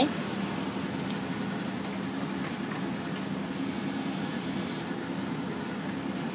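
Steady hum and rushing air of a biosafety cabinet's blower running, level and unbroken.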